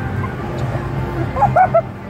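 A few short, high-pitched laughing yelps about one and a half seconds in, over a steady background din of an amusement-park crowd.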